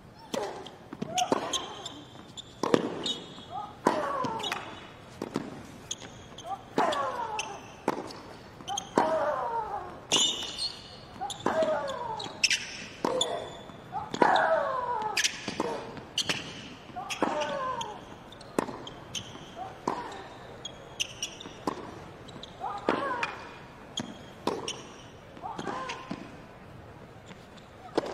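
A long hard-court tennis rally: a serve, then racket strikes on the ball about every second to second and a half. Most strikes come with a player's short grunt that falls in pitch, and there are brief high shoe squeaks between shots.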